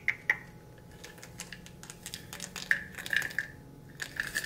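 Two sharp clicks right at the start, then a cluster of clicks and rattles about three seconds in: a small supplement pill bottle being handled and its cap twisted open.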